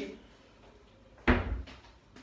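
A kitchen cupboard door shutting once with a single low knock about a second and a half in, against a quiet room.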